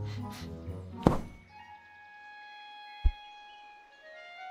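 Cartoon foley as a big rabbit heaves himself out of his burrow: a sharp thump about a second in and a short deep thud near the three-second mark, over soft, sustained orchestral music.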